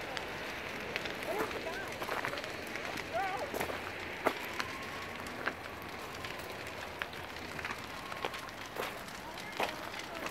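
A trailer home fully involved in fire, burning with a steady rush and irregular sharp pops and crackles. Faint voices can be heard in the distance.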